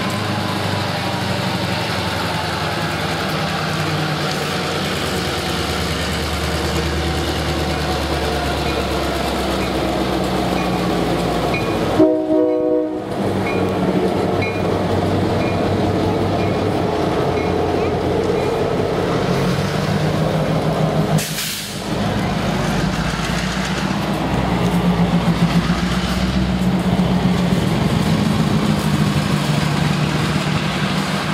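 Freight train of boxcars and covered hoppers rolling past close by: a steady rumble and rattle of wheels on rail that goes on throughout, broken briefly twice.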